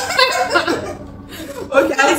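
A group of women chuckling and laughing, mixed with a few spoken words, with a short lull a little past a second in.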